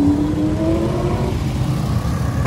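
Street traffic close by: a vehicle's engine rises in pitch as it accelerates past, over a steady low rumble of other traffic.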